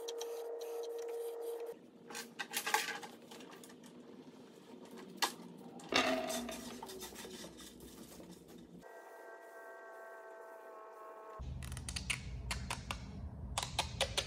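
Hand rubbing and scratching on plywood, as a rag wipes on finish and the wood is hand-sanded, in several short clips. Scattered small clicks and knocks run through it, and a steady hum is heard in two stretches.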